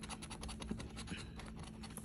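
A coin edge scraping the latex coating off a paper scratch-off lottery ticket in quick, repeated short strokes.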